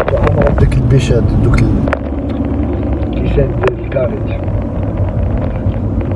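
Car cabin noise while driving: a steady low rumble of road and engine noise heard from inside the moving car.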